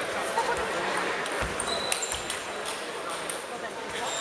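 Celluloid-style table tennis ball clicking off rackets and the table: a handful of sharp, irregular ticks over the murmur of voices in a sports hall.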